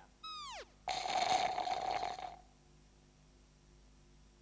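A cat's short meow falling in pitch, followed by about a second and a half of a rasping noise that stops abruptly.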